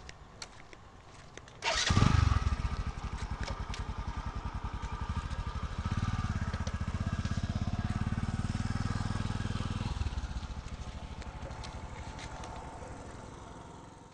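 Motorcycle engine starting about two seconds in, then running with an even puttering beat. It runs louder and heavier for a few seconds in the middle, then eases back and fades near the end.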